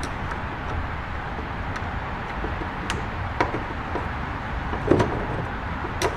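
A few light clicks and knocks of a Kenmore 148.12070 sewing machine head shifting against its wooden cabinet as it is worked down onto the hinge pins, the loudest knock about five seconds in, over a steady low background rumble.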